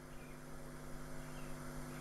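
Faint, steady electrical mains hum: a low buzz made of several fixed tones that holds without change.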